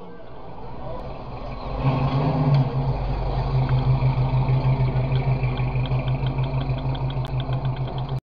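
Engine of a red 1960s Ford Mustang coupe running as the car rolls slowly past. Its deep exhaust note swells up about two seconds in, then pulses evenly several times a second.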